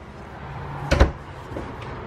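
A cabinet door swung shut, closing with a single sharp knock about a second in.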